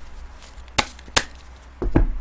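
Tarot card deck being handled as a card is drawn: a few short sharp clicks of the cards, the two loudest close together about a second in.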